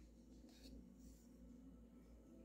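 Near silence with the faint scraping of a wire whisk stirring thick cream and whipped cream together in a metal bowl.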